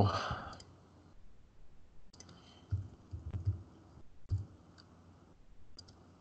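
Computer mouse clicking: about half a dozen short, separate clicks spread over the last few seconds, some with a soft low thud.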